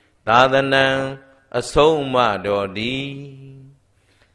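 A Buddhist monk's voice chanting Pali verse in a steady intoned voice: two phrases, the second drawn out long and trailing off near the end.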